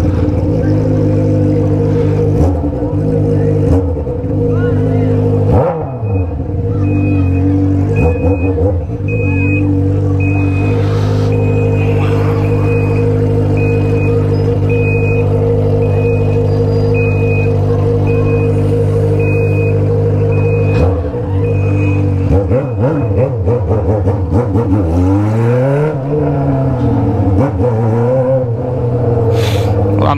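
Honda Hornet's inline-four engine breathing through a bare 3-inch exhaust pipe with no muffler, running steadily at low revs while the bike rolls slowly. Near the end the throttle is blipped, the engine note rising and falling several times.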